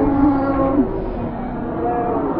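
Eerie ambient background music: low, drawn-out tones layered over one another, one sliding down and ending just under a second in.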